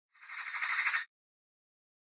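A short, harsh, rasping burst of noise lasting about a second, growing louder and then cutting off abruptly: a sound effect opening the intro title sequence.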